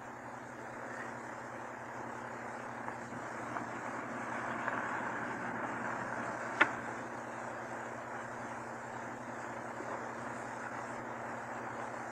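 A motor car running, heard as a steady muffled rumble that swells a little about four seconds in. Under it are the surface hiss and steady hum of a 1929 Vitaphone sound-on-disc recording, with one sharp disc click just past the middle.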